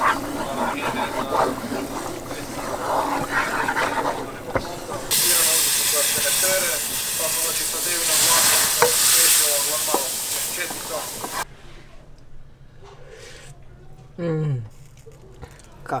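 Flour-and-oil roux sizzling in a frying pan while it is stirred with a wooden spoon. About five seconds in, a loud hiss starts as the hot roux is poured and scraped into a pot of bean stew. The hiss cuts off suddenly about six seconds later.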